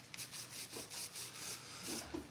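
A nearly dry paintbrush dry-brushing paint onto burlap: faint rubbing in quick short strokes, several a second.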